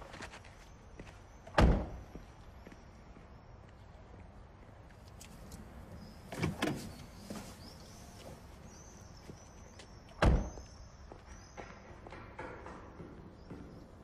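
A car door slammed shut twice, one hard thud about one and a half seconds in and another about ten seconds in, with a softer knock in between.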